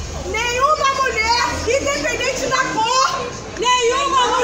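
Several women's voices raised at once, high-pitched and overlapping so that no single line of words stands out.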